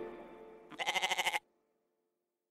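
The last of the outro music fades, then about three-quarters of a second in a single short, quavering goat bleat sounds for well under a second and cuts off sharply.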